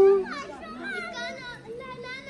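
Children's voices talking and calling out, with a long high-pitched call trailing off just as it begins.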